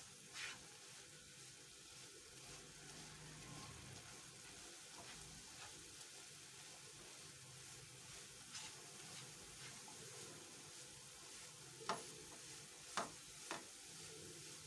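Faint sizzling of desiccated coconut cooking in hot sugar and corn syrup in a non-stick pan, stirred and scraped with a silicone spatula. A few sharp taps near the end.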